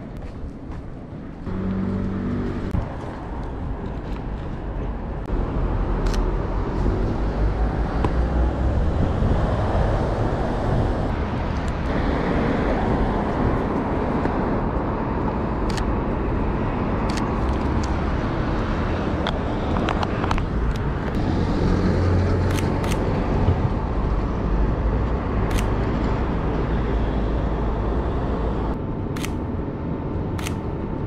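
Road traffic passing on a city street, a steady rumble of cars that swells about five seconds in. In the second half, half a dozen short, sharp camera shutter clicks stand out over it.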